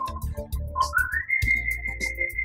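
Light comedic background music with a low steady beat, over which a whistle-like tone slides upward about a second in and then holds at the higher pitch.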